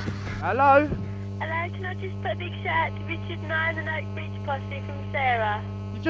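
A caller's voice heard over a telephone line on air: thin, narrow phone-quality speech with a steady low mains hum underneath.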